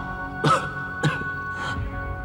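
A sick old man coughing three times, about half a second apart, over soft sustained background music.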